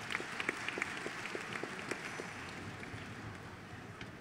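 Audience applauding, the clapping thinning and fading away toward the end.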